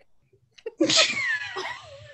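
A woman's sudden loud burst of laughter a little under a second in, falling in pitch over about a second before trailing off.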